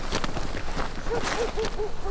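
A soldier running in combat kit: scattered footfalls and rattles, then from about a second in about five short, quick voiced huffs of hard breathing as he reaches cover.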